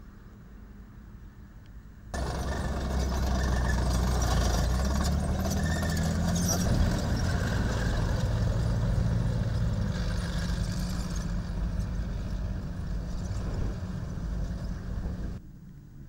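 Low, distant rumble of armoured vehicles driving. About two seconds in it jumps suddenly to loud, close engine noise from a military Humvee and an armoured personnel carrier driving past: a steady deep drone with shifting pitch. Shortly before the end it cuts off abruptly back to the distant rumble.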